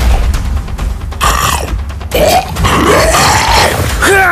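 A person grunting and growling in a low voice, several drawn-out grunts that rise and fall in pitch, over background music with a heavy steady bass.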